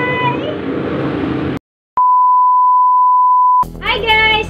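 A drawn-out spoken 'bye' trails off into room noise, which cuts to dead silence about a second and a half in. After a click, a loud, steady, pure electronic beep tone sounds for about a second and a half and stops abruptly as speech begins.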